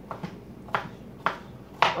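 Kitchen knife chopping a zucchini into bite-sized pieces: a few sharp knocks of the blade about half a second apart.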